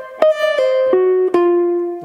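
Archtop jazz guitar playing a slow phrase of single notes, about four in all. The second note is slurred down from the first without a fresh pick, and the rest are picked and left to ring.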